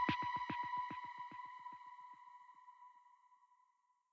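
The closing seconds of an electronic dance track: a fast run of short pulses, each falling in pitch, about six a second, fades away over the first three seconds. Under them a held high synth tone rings on and dies out near the end.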